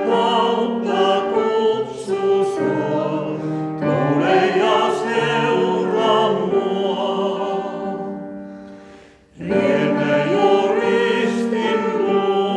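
Mixed vocal quartet of men and women singing in harmony with piano accompaniment. One phrase fades out about nine seconds in, and the voices come back in together a moment later.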